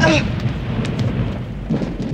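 Thunder rumbling over steady rain, with a few sharp crackles about a second in.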